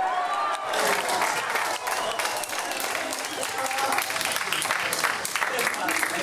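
A small crowd applauding and cheering, with dense clapping that sets in about a second in under shouts and excited voices.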